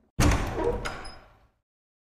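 Heavy wooden door slamming shut: a single loud bang that rings out and fades over about a second.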